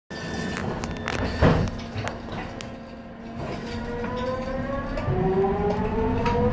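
Mark I SkyTrain's linear induction motor propulsion whining, the whine climbing steadily in pitch from about halfway through as the train picks up speed, over the rumble of the car on the track. A single sharp knock about a second and a half in.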